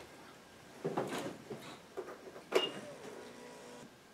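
Snowmobile's electric fuel pump priming at key-on: a faint steady hum starting about two and a half seconds in and lasting over a second, after a couple of short knocks from handling the sled.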